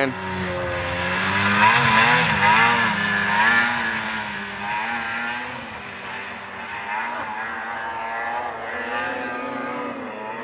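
Snowmobile engine revving hard as the sled climbs a steep snow slope, its pitch rising and falling with the throttle, loudest in the first few seconds and then fading as it gets farther away.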